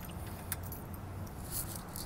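Light metallic jingling, a few brief jingles, over a steady low rumble.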